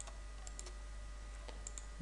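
Several faint, irregularly spaced clicks of a computer being operated (mouse and keys) while working in PCB design software, over a low steady electrical hum.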